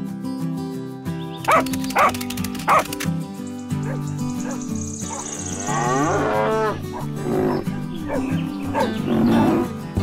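Cattle mooing over steady background guitar music, with three short, sharp, loud calls between about one and a half and three seconds in, and long bending moos in the second half.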